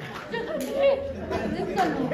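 Chatter: several voices talking over one another.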